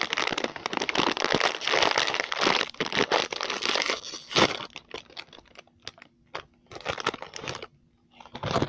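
Plastic potato chip bag crinkling as hands rummage in it, dense for the first four seconds or so, then in shorter scattered crinkles.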